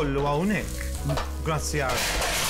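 A small pan sizzling on an induction hob as peanut butter is warmed in it, under background music with a singing voice.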